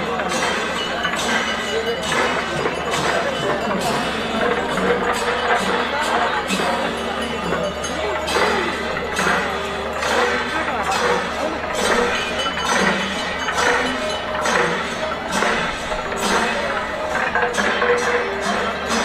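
Traditional Kerala temple percussion ensemble playing: drums and clashing hand cymbals in rapid, continuous strokes, with crowd voices beneath.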